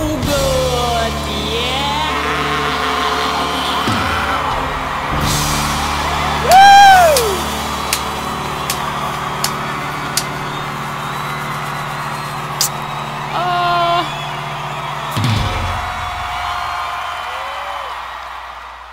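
The close of a live country-rock band performance over a cheering concert crowd: a long held final chord, with a loud whooping yell about six and a half seconds in and a shorter shout near fourteen seconds, fading out near the end.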